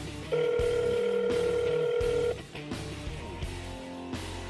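Telephone hold music playing over a call on speakerphone, starting abruptly, with one long held note in the first half and a steady beat: the call has been transferred and put on hold.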